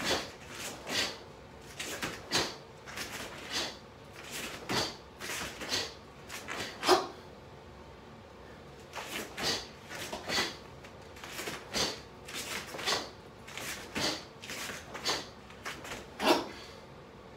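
Karate punches and steps thrown at speed: the cotton gi snapping with each technique and bare feet striking and sliding on rubber floor mats. They come as a quick series of short, sharp sounds, two or three a second, with a short pause about halfway.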